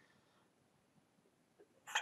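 Near silence, then a man's short, sharp intake of breath near the end.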